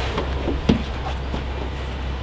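A man settling onto a car's rear bench seat, with a soft thump about two-thirds of a second in and a few fainter knocks, over a steady low background rumble.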